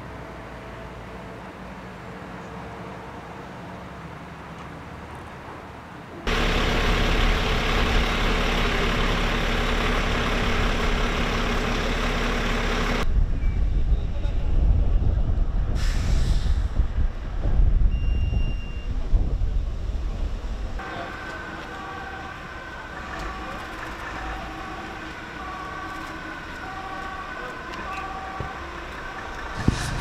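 A loud steady machine noise for several seconds, then rumbling, then from about two-thirds in an emergency vehicle's two-tone siren sounding at a distance, alternating between two pitches over and over.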